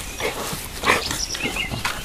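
Wild boar making a few short grunts as they jostle at the tree, with some brief high chirps from a small bird in the background.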